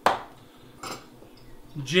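A glass bottle set on a kitchen counter with a sharp knock, then a fainter knock just under a second later.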